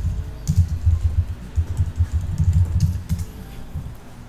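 Typing on a computer keyboard: a quick, irregular run of keystrokes heard as dull thuds with sharper clicks, thinning out near the end.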